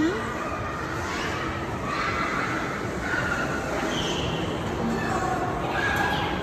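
Go-karts running around an indoor track: a steady noise echoing through a large hall, with faint distant voices and a brief high squeal at the start.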